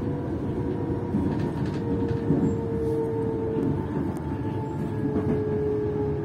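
Electric passenger train heard from inside the carriage: steady running rumble of wheels on track with a motor whine that slowly falls in pitch as the train slows for a station.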